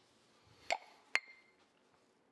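Two sharp clinks of small kitchen items knocked together on a stone countertop, about half a second apart, the second ringing briefly.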